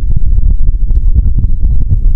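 Wind buffeting the microphone on open water: a loud, uneven low rumble, with faint scattered ticks above it.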